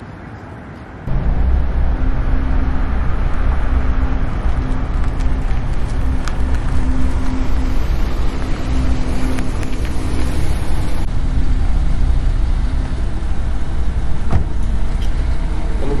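A car's engine running with a loud, deep rumble that cuts in suddenly about a second in and holds steady as the car pulls up to the kerb.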